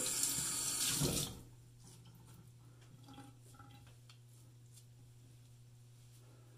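Water running from a tap into a sink for about a second and a half, then shut off.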